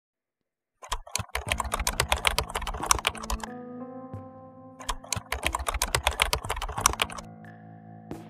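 Rapid keyboard-typing clicks, a typing sound effect, come in two runs: the first starts about a second in and lasts a couple of seconds, and the second fills the middle of the second half. Soft background music holds sustained notes between and after the runs.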